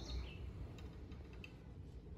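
Faint outdoor ambience: a steady low rumble with a couple of short, faint bird chirps, one falling in pitch near the start and a brief one later.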